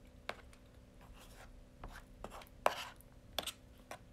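A few light, irregular taps and clicks with brief rustles, the loudest a little past the middle, over a faint steady hum.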